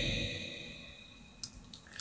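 The reverberant tail of a voice through a studio microphone, fading away over the first second and a half, followed by a few faint short clicks near the end.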